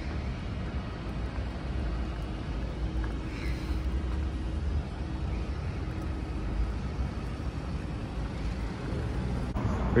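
City street traffic noise: a steady low rumble of car engines at a traffic-light junction.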